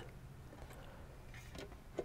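Quiet room tone in a pause, with faint handling noise from a stainless steel box being set on a counter and a light tick about a third of the way in.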